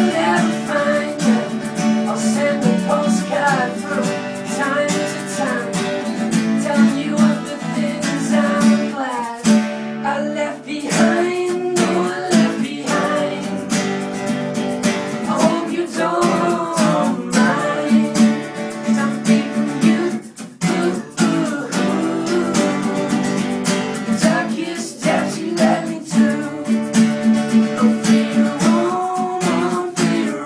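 Two acoustic guitars strummed in a steady rhythm while male voices sing a song, with a brief lull about two-thirds of the way through.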